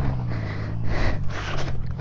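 Dirt bike engine running at low revs just after being kickstarted, a steady low note as the bike moves off slowly.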